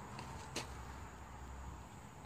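Quiet outdoor background noise with a low rumble and one light click about half a second in.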